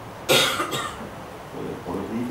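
A person coughing twice, two short coughs about half a second apart, the first louder.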